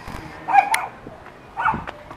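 A dog barking: two short barks about a second apart.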